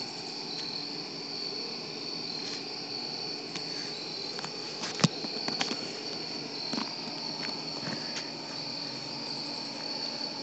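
Crickets chirping in a steady high trill, with a sharp click about five seconds in and a few fainter clicks.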